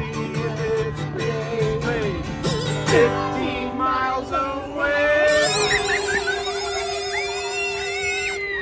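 Kazoo buzzing a tune over a strummed acoustic guitar, settling on a long held note in the second half.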